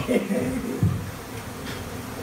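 Honeybees buzzing steadily around their open comb, the hum settling in about a second in after a brief voice and a single knock.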